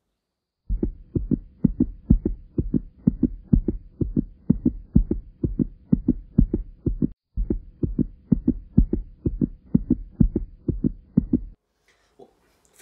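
Low, evenly repeating thumps, roughly two to three a second, over a faint steady hum, in the manner of a heartbeat sound effect laid under a title card. They start under a second in, break off briefly about seven seconds in, and stop shortly before the end.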